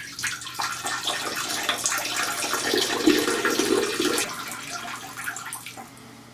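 A steady stream of running water splashing, tapering off near the end.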